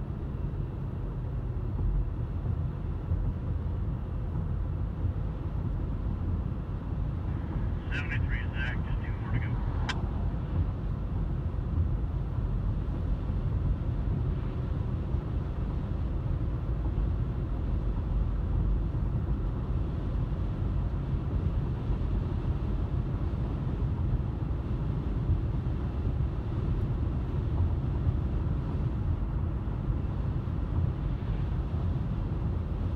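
Steady road and tyre rumble with engine noise, heard inside the cabin of a car driving at highway speed. A short burst of higher-pitched sound comes about eight seconds in.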